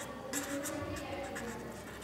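A pen writing on paper: short scratching strokes of handwriting.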